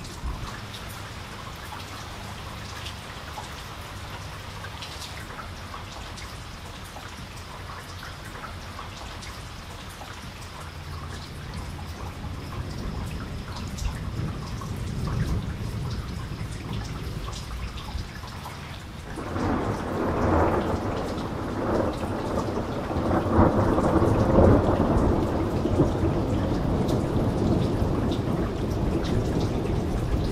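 Steady rain falling, with many small drips and spatters. About two-thirds of the way through a long roll of thunder comes in suddenly and becomes the loudest sound, rolling on to the end.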